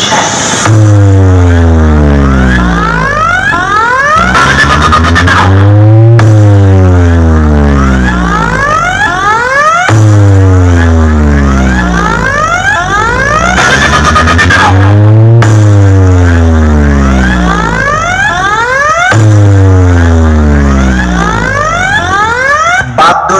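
A large DJ box speaker stack playing a loud sound-check track: deep bass sweeps that fall in pitch, repeating every four to five seconds, with rising sweeps climbing in between.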